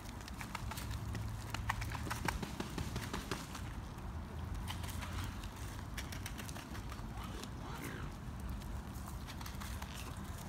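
Mute swans pecking seed, their bills making irregular clicking taps, bunched in the first few seconds and again around the middle.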